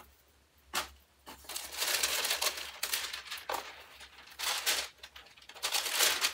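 Tissue paper rustling in several bursts as a cardboard box is opened and the wrapping is pulled back from the wig inside.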